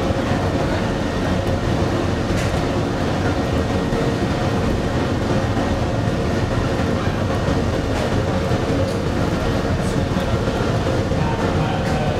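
Crematorium furnace running with its burners firing into the open retort: a loud, steady, even rumble of flame and combustion blower.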